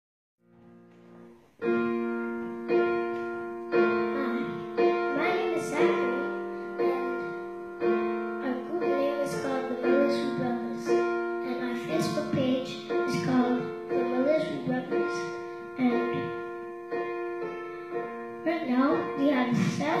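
Digital piano played in slow, sustained chords, a new chord struck about once a second, with a boy's voice through a microphone coming in over it about five seconds in.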